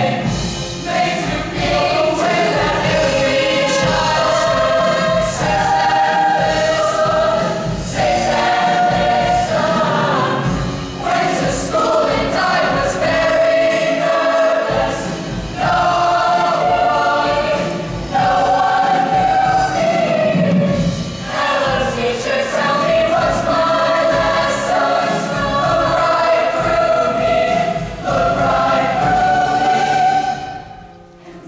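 A large mixed-voice show choir singing loudly in held chords, the notes changing every second or two.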